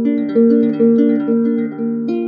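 Harp playing a gentle melody of plucked notes, a new note about every half second, each left to ring on under the next. The playing swells louder right at the start.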